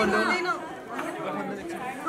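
Chatter of a crowd: several voices talking over one another.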